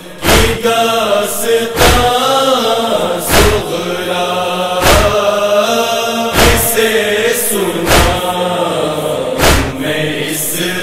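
Voices chanting a Shia nauha (Urdu Muharram lament) in long held notes, kept in time by a heavy thump about every one and a half seconds, the beat of matam (chest-beating, sina zani).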